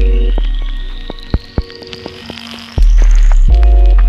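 Ambient electronic (IDM) music: deep bass notes that swell and slowly fade, the second coming in near three seconds, under short held chords and scattered clicks. A thin high tone glides slowly upward and stops about three and a half seconds in.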